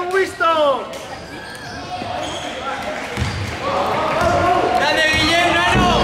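A basketball being dribbled on a hardwood gym floor, with a few low thuds of the ball. Players' voices shout and call out at the start and again over the last second and a half.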